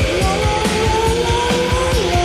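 Rock band playing, with drums keeping a steady beat under a held high note that slides slowly upward in pitch and breaks off near the end.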